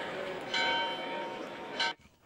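A church bell ringing over the murmur of a street crowd. A fresh stroke comes about half a second in, and its tones fade away over the next second, with a short burst of voices near the end.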